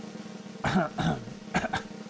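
A man coughing: a few short, separate coughs starting about half a second in.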